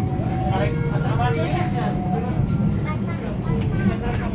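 Passenger train running, heard inside the carriage as a steady low rumble, with indistinct voices talking over it.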